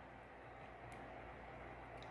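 Near silence: faint room tone, with one faint tick a little under a second in.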